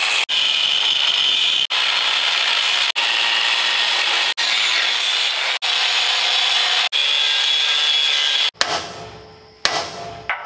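Angle grinder cutting into a steel truck frame, a steady high-pitched whine with the cutting noise, broken off abruptly several times. A little over eight seconds in it stops and dies away, and a sharp hammer strike on metal follows near the end.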